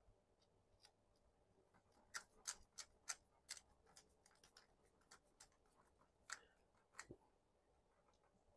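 Faint, irregular clicks of a screwdriver tightening a terminal screw on a switch-receptacle combo device. The clicks start about two seconds in and come a few to the second, then thin out.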